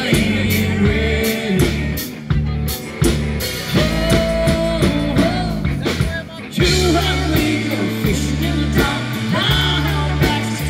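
Live rock band playing, with a steady drum-kit beat, bass and electric guitar.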